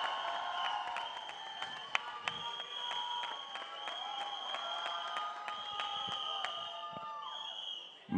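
Audience applauding and cheering, with long high whistles held over the clapping; it dies away near the end.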